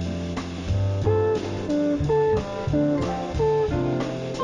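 Slow jazz music led by a plucked guitar playing short single notes, with sustained bass notes underneath.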